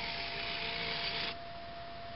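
Small electric drive of a NOCH HO scale segment turntable whirring as the bridge swings from the far track to the center track. It stops on its own a little over a second in, once the self-aligning bridge lines up with the track.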